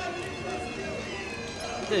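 Voices of players and coaches calling out across an indoor futsal court, heard at a distance under the broadcast.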